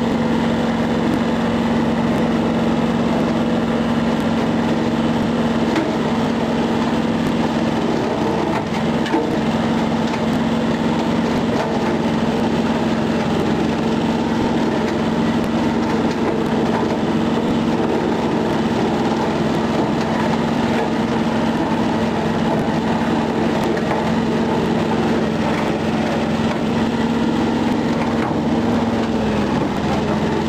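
John Deere 650 compact tractor's three-cylinder diesel engine running steadily under load while its bush hog rotary cutter chops and crunches through dense overgrown brush. The engine note sags briefly near the end.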